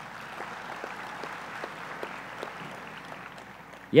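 An audience applauding steadily, clapping spread evenly through the pause.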